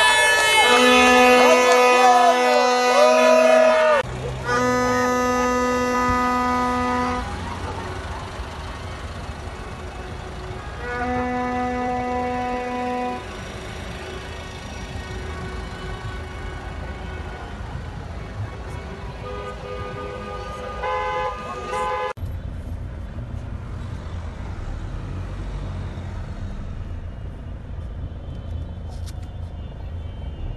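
Horns blowing in long, steady single-note blasts, three in the first thirteen seconds, with crowd shouting in the first few seconds, then shorter toots around twenty seconds. From about twenty-two seconds, a low steady car engine and road rumble from inside a moving car, with horns further off.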